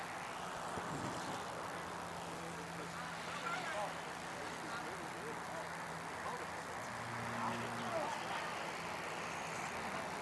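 Faint open-air ballfield ambience: distant voices of players and spectators over a steady low hum.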